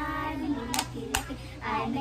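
Children's hand-clapping game: two sharp hand claps close together about a second in, between bits of a child's sung chant.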